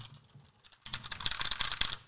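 Keys of an HP Omen Spacer wireless tenkeyless mechanical keyboard being pressed: a few keystrokes, a short pause, then a quick run of rapid key clicks from about a second in.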